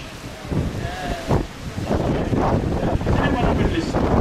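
Wind buffeting the microphone on the open deck of a moving river cruise boat, in uneven gusts over a low rumble from the boat and the water.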